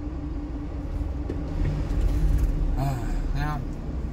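Steady low rumble of engine and road noise inside a moving vehicle's cab, with a constant hum running underneath.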